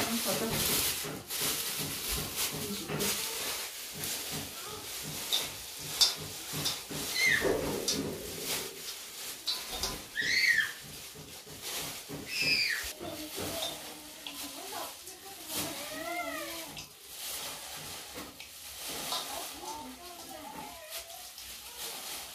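Thin plastic bag crinkling and rustling as it is pulled onto a hand as a glove, with short high-pitched calls in the background.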